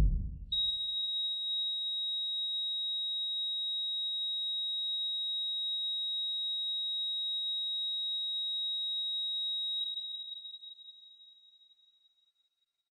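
A steady, high-pitched single electronic tone, held unchanged for about nine seconds and then fading out. It follows the dying rumble of a loud boom at the very start.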